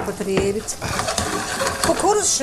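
Sliced sausages sizzling as they fry in a pan, a steady crackling hiss that takes over after a brief bit of voice at the start.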